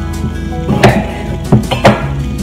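Background music, over which a kitchen knife cuts through raw potato and knocks on a wooden chopping board, with three sharp knocks in the second half.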